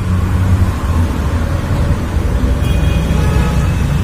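A steady low rumble of background noise, like a vehicle running somewhere near, with faint high tones briefly past the middle.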